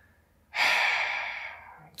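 A man's loud breath into a close microphone, starting suddenly about half a second in and fading away over about a second.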